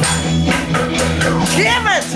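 Newfoundland ugly stick being struck in a steady rhythm, about four strokes a second, its jingles rattling over accompanying music. A voice rises and falls near the end.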